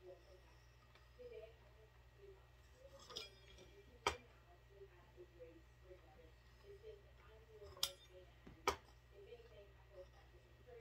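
Pizza cutter rolling through pasta dough on a stone countertop. The metal cutter clicks sharply against the counter a few times, loudest about four seconds in, with two more clicks near the end.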